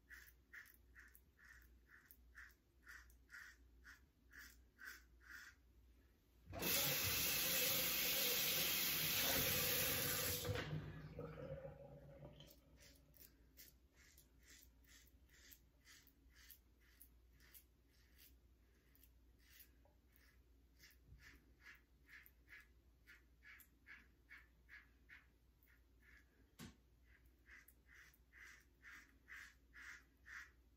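Double-edge safety razor with a WCS Lithe head scraping through lathered stubble in short strokes, about three a second. About six seconds in, water runs loudly for about four seconds and fades, after which the short scraping strokes go on, fainter for a while and stronger again near the end.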